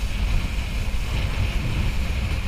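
Wind buffeting the microphone of a kiteboarder's camera while riding on the water: a loud, steady low rumble with a rushing hiss above it.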